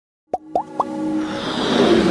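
Animated-intro sound effects: three quick plops, each rising in pitch, about a quarter second apart, followed by a synth swell that builds steadily louder.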